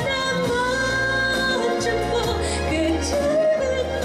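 A woman singing a slow ballad live into a handheld microphone over instrumental accompaniment with a steady bass, holding long, drawn-out notes.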